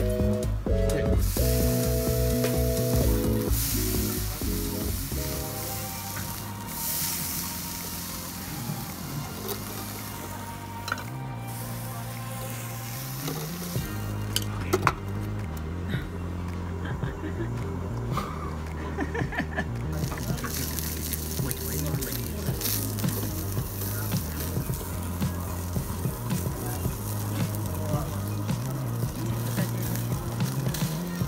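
Beef sizzling on the wire mesh of a charcoal yakiniku grill, a steady crackling hiss, with background music that is loudest in the first few seconds.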